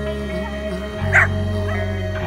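A dog barks once about a second in, then gives a shorter, fainter yip, over a slow guitar rock song playing as background music.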